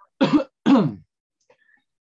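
A man clearing his throat in two short, loud bursts about half a second apart.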